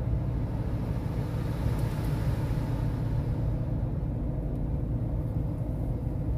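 Steady low rumble of a car's engine and tyres heard from inside the cabin while driving on a wet road, with a soft hiss that swells and fades about halfway through.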